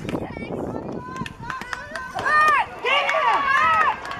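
Several voices yelling and cheering during a football play, overlapping shouts that swoop up and down in pitch and grow loudest in the second half, with scattered sharp clicks.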